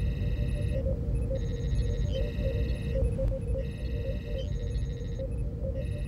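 Sci-fi starship bridge ambience: a steady low engine rumble under irregular soft computer blips and repeated bursts of high, warbling electronic chirps, each lasting about a second.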